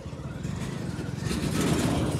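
Motorcycle engine running, growing steadily louder as a motorcycle pulling a cart passes close by.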